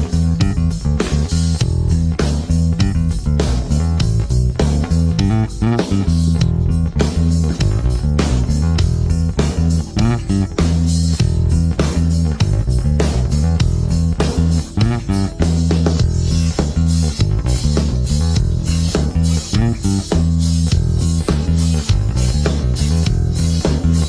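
Fender American Professional II electric bass played fingerstyle, a continuous, rhythmic bass line of short plucked notes.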